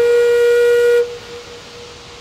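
Background music: a flute-like wind instrument holds one long note after a short melodic run, and the note fades away about a second in, leaving a steady rushing hiss.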